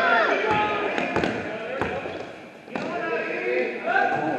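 A basketball bouncing on a gym floor during play, a handful of sharp bounces spaced irregularly, under voices in the hall.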